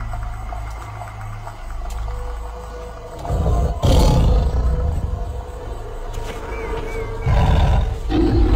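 A tiger's roar over dramatic intro music with a deep low rumble. The sound swells loudly about three seconds in, with a sharp hit just before four seconds, and swells again near the end.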